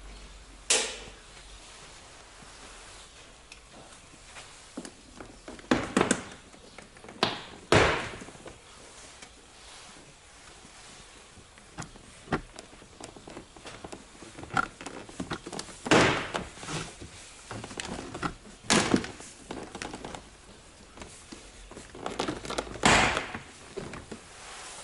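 Plastic retaining clips of a car's door trim panel popping out of the door one after another as the panel is pulled off: about six loud sharp snaps spread through the time, with smaller plastic knocks between.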